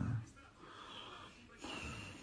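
A man's voice trails off, followed by quiet room tone. Near the end there is a short, soft breath in before he speaks again.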